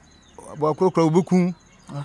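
Insects, crickets by their chirring, buzzing faintly and steadily at a high pitch, with a man's voice speaking briefly over them about half a second in.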